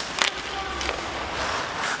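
Ice hockey rink sound: skate blades scraping on the ice and one sharp stick-on-puck hit just after the start, over a steady arena crowd murmur.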